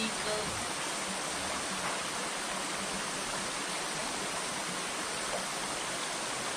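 Shallow, rocky stream running steadily: a continuous, even rush of water.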